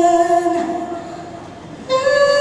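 A woman's voice holding a long sung note live at the microphone; the note fades out about halfway through, and a new, higher note starts sharply near the end.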